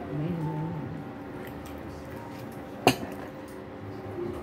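Restaurant table sounds: a faint voice in the background in the first second, then a single sharp clink of tableware about three seconds in.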